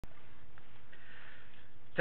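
Steady low background hiss with a faint electrical hum, and no distinct sound events.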